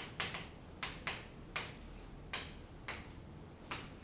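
Chalk striking and writing on a chalkboard: about nine sharp taps at uneven intervals, some in quick pairs.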